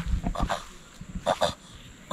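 A male tortoise makes several short grunts while mounted on another tortoise in mating, with a close pair of grunts just after a second in.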